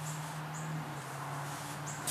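A few short, high bird chirps over a steady low hum.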